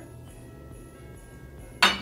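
Faint background music, then near the end a single sharp glassy clink as a small glass prep dish is set down among the other ingredient dishes.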